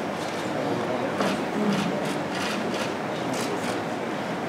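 Low murmur of voices over steady room noise in a hall, with a few soft rustles.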